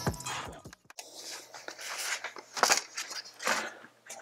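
Background music stops about a second in. Then a run of scraping and snapping sounds follows as the Alienware M15 R4's bottom cover is pried off and its clips let go, the loudest snap a little before the end.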